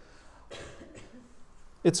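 A man's brief, soft throat-clear about half a second in, followed by speech starting near the end.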